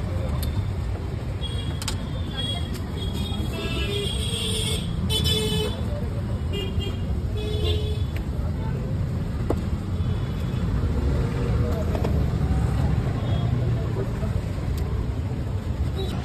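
Street traffic: a steady low rumble of passing vehicles, with several horn toots clustered in the first half and voices in the background.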